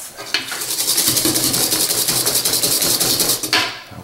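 Wire whisk beating a liquid egg, sugar and vanilla mixture against the sides of a copper bowl, in a rapid, even rhythm of scraping strokes. It starts just after the beginning and stops about half a second before the end.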